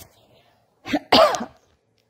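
A woman coughs once, about a second in: a short catch, then one harder cough.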